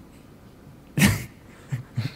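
A man's breathy burst of laughter, a sudden snort about a second in, followed by a few short, softer chuckles.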